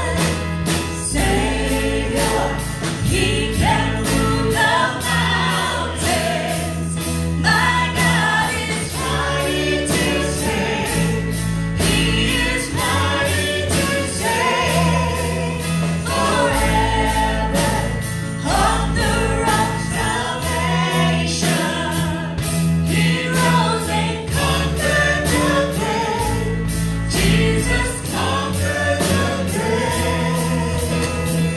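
Church praise band performing a gospel worship song live: several voices singing together over electric guitar, a sustained bass line and a steady drum beat.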